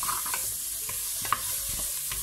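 Garlic, onion and ginger sizzling in hot oil in a metal pressure-cooker pot while a wooden spoon stirs them, scraping and tapping the pot, with one sharper knock a little past halfway.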